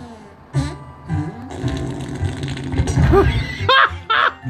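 Cartoon soundtrack playing from a TV speaker: music under a long, low comic fart sound effect, with a few rising squeaky cartoon sounds near the end.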